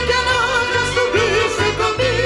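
Live Peruvian folk band music: a woman sings long, wavering notes with a strong vibrato over a steady pulsing electric bass, violin and keyboard.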